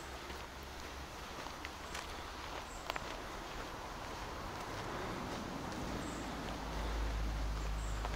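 Footsteps on a dirt forest path, with a few sharper clicks from the walking, over a steady rushing background that grows slowly louder.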